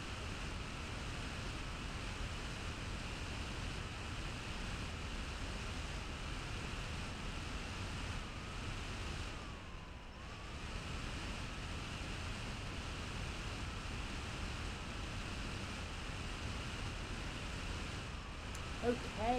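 Room tone: steady microphone hiss with a low rumble and a faint wavering high whine underneath, which dips briefly about ten seconds in.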